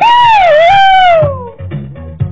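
Cartoon puppy's long high whine, wavering in pitch and then sliding down and fading about a second and a half in, over background music with a steady beat.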